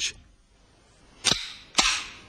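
Two sharp impact sounds about half a second apart, near the end, each with a short ringing tail.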